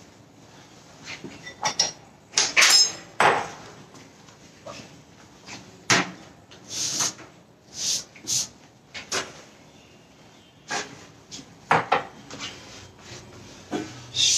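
Kitchen handling sounds: scattered knocks and clinks of bowls, a knife and utensils being picked up and set down on a counter, with one brief ringing clink about three seconds in.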